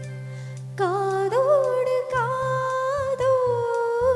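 Young woman singing a solo into a handheld microphone over a steady low accompaniment; her voice comes in about a second in and holds one long note.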